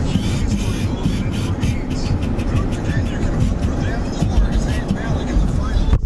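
A car driving, with loud low road noise and wind buffeting on the microphone.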